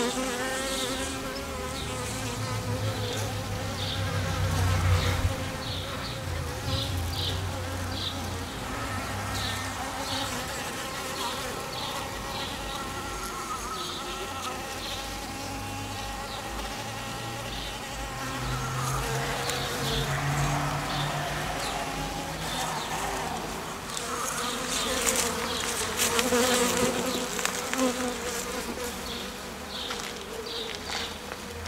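Many honeybees buzzing at close range: a continuous hum of several overlapping pitches that waver as individual bees move and fly.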